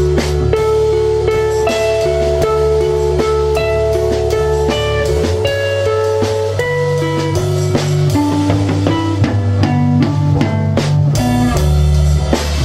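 Slow instrumental jam on electric guitars, with long held melody notes over a steady low bass line and light drum kit and cymbal hits.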